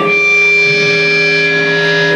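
Live rock band on stage holding a sustained chord, with a bright high shimmer over it that stops near the end.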